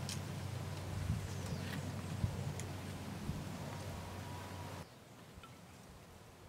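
A few light clicks and knocks from a plastic bottle, cap and pump sprayer being handled while a pesticide concentrate is measured out, over a steady low hum. The hum and clicks drop away abruptly near the end, leaving quieter ambience.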